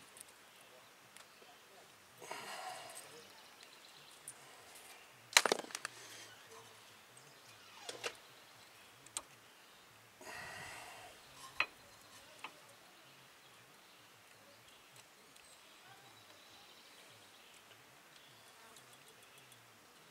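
Faint handling of brake pads and their steel spring clips: a few sharp metallic clicks and clinks as the clip pins are bent out with a tool and the pads are fitted to the caliper bracket, the loudest about five seconds in, with two short scraping stretches in between.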